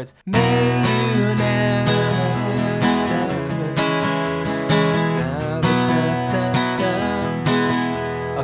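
Steel-string acoustic guitar in open E tuning, strummed chords ringing in a steady rhythm. The playing starts just after a brief pause.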